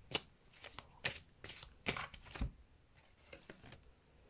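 Deck of tarot cards being shuffled by hand: about a dozen short, quiet card snaps and slides at uneven spacing, thinning out near the end.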